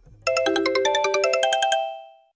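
Mobile phone ringtone: a quick, bright melody of chiming notes that starts about a quarter second in, plays for about a second and a half and fades out.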